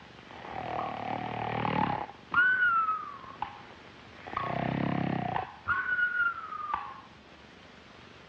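Cartoon snoring, two breaths: each a rasping, rumbling inhale followed by a whistle that falls in pitch on the exhale.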